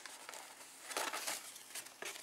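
Soft rustling and scraping of paper and card being handled, with a few light rustles starting about a second in.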